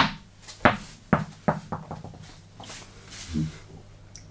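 A tennis ball bouncing on the floor: a sharp hit, then bounces coming quicker and softer as it settles.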